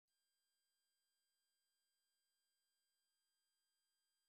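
Near silence: only a very faint, steady electronic noise floor at the end of the soundtrack.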